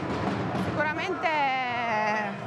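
Speech: a woman's voice in a pause of her answer, with a long drawn-out sound falling in pitch from about a second in.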